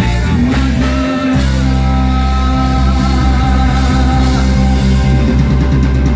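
Live rock band playing amplified: electric guitars, bass, keytar and drums, with a gliding sung vocal line early on. The low end drops out briefly a little after one second, then the band carries on with steady, sustained chords.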